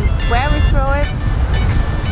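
A woman's voice mid-sentence over background music, with a steady low rumble of wind on the microphone aboard a racing yacht under sail.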